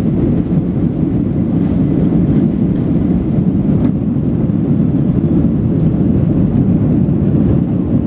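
Jet airliner's engines and rolling wheels heard from inside the cabin during the takeoff run: a loud, steady, deep rumble.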